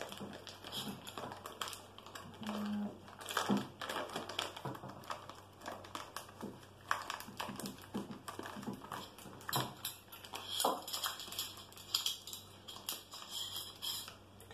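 Hands handling a fibreglass vertical antenna and its plastic-wrapped parts: irregular rustling of plastic with light clicks and taps throughout.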